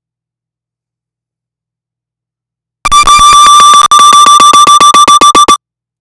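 Audio feedback squeal through the studio's playback chain: a piercing, extremely loud single high tone with a rapid stutter. It bursts in about three seconds in and cuts off suddenly after about two and a half seconds.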